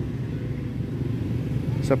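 Low, steady engine noise of motorcycles in street traffic.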